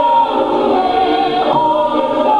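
Group of voices singing a vi'i, a Samoan praise song, together as a choir: long held notes with a slight waver, moving to a new note about a second and a half in.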